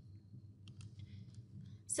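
A few faint clicks from a computer mouse as the plan view is moved and zoomed, over a low steady background hum.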